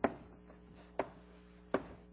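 Three sharp taps about a second apart, from writing on a board.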